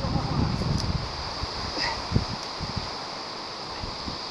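Wind buffeting the microphone and rustling through tree foliage, heaviest in the first second. A few light knocks follow as hands and feet meet branches during a tree climb.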